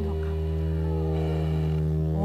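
Steady low musical drone: several tones held at fixed pitch without a break.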